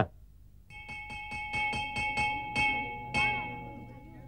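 School bell hanging in a wooden frame, rung by hand with rapid clapper strikes, about five or six a second. It starts a little under a second in, stops after about three seconds, and its ringing tone dies away.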